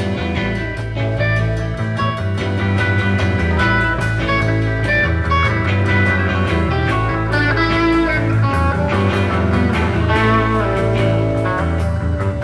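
Live psychedelic rock band playing an instrumental passage: lead electric guitar notes over bass guitar and drums.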